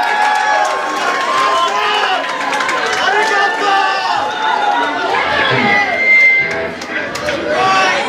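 Concert crowd shouting and chattering, many voices at once, with no band playing. A brief high steady tone cuts through about six seconds in.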